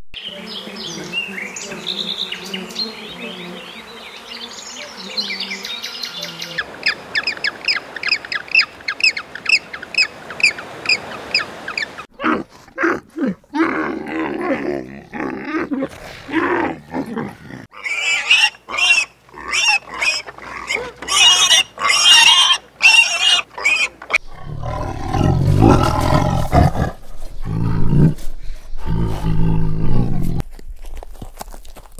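A string of different animal calls: high chirping, then a run of evenly spaced chirps about four a second, then louder calls. In the last few seconds a tiger gives deep, growling roars.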